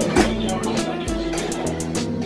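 Music with guitar over a steady beat of about four strokes a second.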